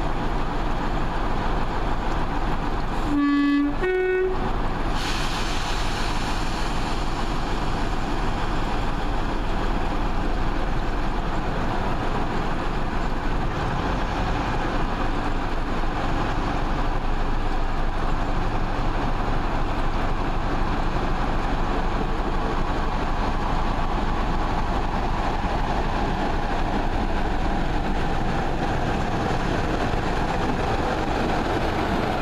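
BR Class 45 'Peak' diesel locomotive sounding its two-tone horn about three seconds in, a short low note then a higher one. Its Sulzer twelve-cylinder diesel engine then opens up and runs loudly as the locomotive pulls away with its train.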